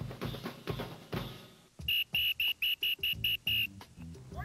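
Music with a steady drumbeat, then a sports whistle blown in eight short, sharp blasts in quick succession, about four a second, in the second half.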